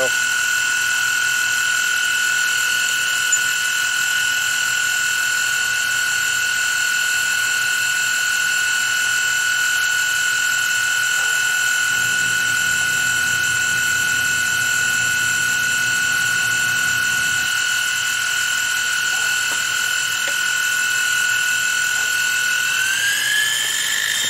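Milling machine spindle turning a boring head that bores out the big end of an air-compressor connecting rod, a steady high-pitched whine. The whine rises in pitch about a second before the end.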